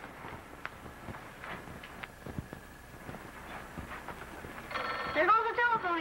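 Telephone bell ringing briefly near the end, with a woman's voice starting over it. Before the ring there is only faint room noise and a few light knocks.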